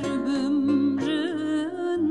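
A woman singing a Kurdish folk song in an ornamented, wavering melodic line over acoustic accompaniment of plucked strings, including a bağlama.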